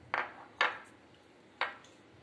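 Small glass bowls clinking against the plate and worktop as they are put down and picked up: three short, sharp clinks.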